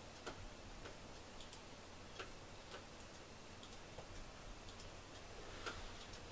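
Faint, light clicks at uneven intervals, some in pairs about half a second apart: a cat's claws tapping on hard wooden surfaces as it steps about.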